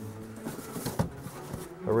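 A steady low buzzing hum, with a couple of faint clicks about a second in.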